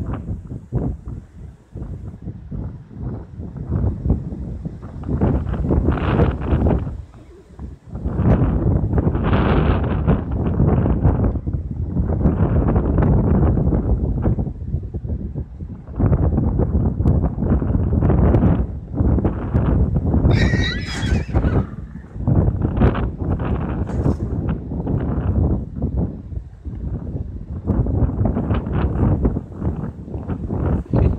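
A horse whinnies once, about twenty seconds in, a high wavering call lasting about a second. Throughout, a heavy low rumble of wind buffets the microphone.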